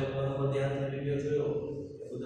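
A man's voice speaking in a level, drawn-out, chant-like tone, with a short break near the end.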